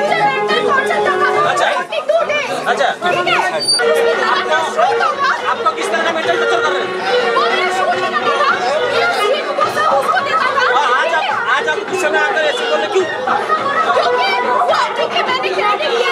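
Several people talking over each other in a crowded hall, with a woman's raised, angry voice among them.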